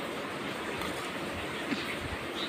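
Steady background hiss at a low, even level, with no distinct sound events.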